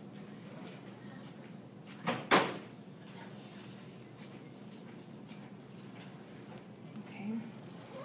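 Two sharp knocks in quick succession about two seconds in, the second louder: metal dissecting scissors set down in the metal dissection tray, over low room noise.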